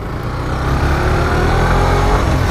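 Suzuki GSX-R125's single-cylinder 125cc engine pulling under throttle, its pitch rising steadily for about a second and a half and then levelling off.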